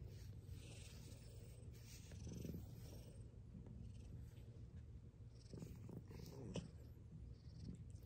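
Domestic cat purring faintly and steadily while it is stroked.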